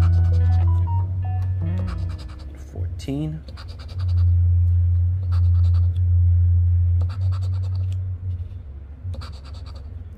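A casino-chip scratcher scraping the coating off a scratch-off lottery ticket in short runs of strokes, over background music with a loud, deep bass that fades out near the end.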